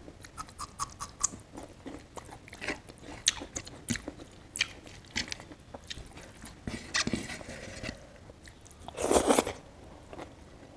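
Close-miked chewing and biting of boiled vegetables and rice eaten by hand: a run of short crisp clicks and crunches, with one louder, noisier burst about nine seconds in.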